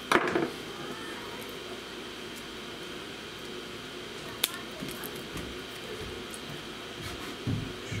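Wire stripper snipping through the insulation of 14-gauge solid copper wire: one sharp click about four and a half seconds in, with a few soft handling knocks near the end, over a steady background hum.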